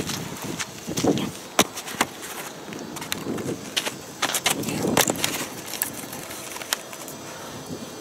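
Scattered knocks, clicks and scuffs of a person crawling over gravel under a bus and handling metal parts in its undercarriage.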